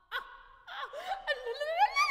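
Solo soprano's extended vocal technique: a quick gasp, then a fluttering, laugh-like voice that climbs steadily in pitch and grows louder toward the end.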